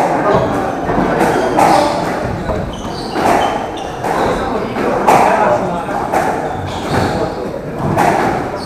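Squash ball struck by rackets and hitting the court walls during a rally: sharp thuds about every second, echoing in the hall, over steady background chatter from spectators.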